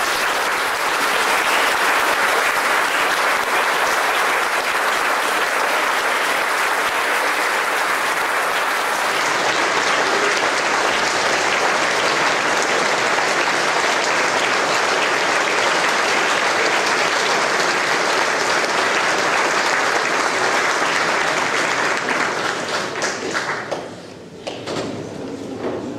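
Concert audience applauding steadily, welcoming the soloists onto the stage; the clapping dies away near the end.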